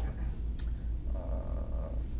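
A steady low hum runs under a pause in speech. About a second in, a man gives a drawn-out filler "uh".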